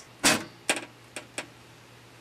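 Side panel of a desktop computer tower being slid off the case: a short scrape of sheet metal, then a few light clicks as the panel comes free.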